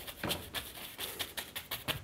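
Paintbrush dabbed and tapped against a stretched canvas on an easel, making a quick, irregular run of soft taps as paint is pressed on.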